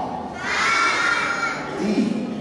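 A class of young children shouting a word together in unison, one chanted call about half a second in that lasts about a second, answering in a phonics alphabet drill.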